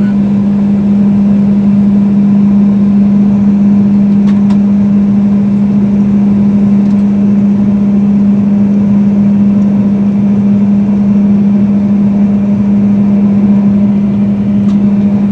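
Claas combine harvester running steadily while unloading threshed oats through its auger into a trailer, heard from the cab as a loud, even drone with one strong low hum.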